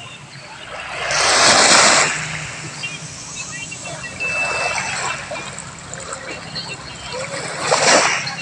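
Small waves washing up onto a sandy beach, with two louder surges of rushing water: one about a second in lasting about a second, and one near the end.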